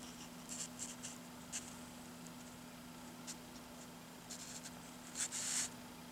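Newsprint pages of a Silver Age comic book rustling as they are handled and turned, with a few soft crinkles and a louder page turn about five seconds in.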